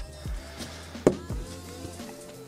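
Quiet background music with a low steady hum, and one sharp knock about a second in.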